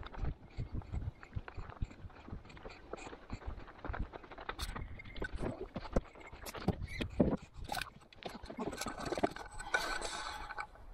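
Footsteps on a gravel road with trekking poles striking the ground: a run of uneven clicks and scrapes.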